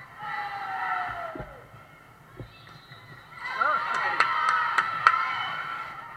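A volleyball rally in a large gym. A long falling call comes near the start, then overlapping raised voices from about three and a half seconds in, with a quick run of five sharp smacks.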